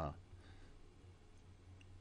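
Near silence: low room tone with a faint click near the end.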